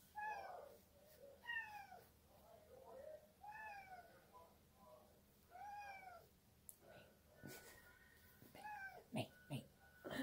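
A house cat meowing quietly and repeatedly, a string of short, rising-then-falling meows every second or two, demanding attention.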